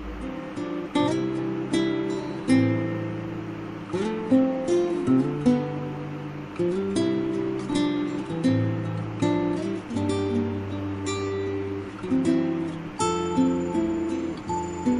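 Background music of a plucked and strummed acoustic guitar, notes struck in a steady rhythm.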